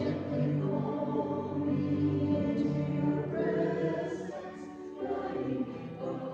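Mixed-voice church choir singing a slow anthem in sustained, held notes, getting softer near the end.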